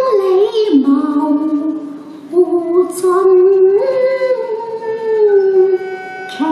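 Cantonese opera (yuequ) singing: a voice holds long notes and slides between them in a melodic line, with a brief break between phrases about two seconds in.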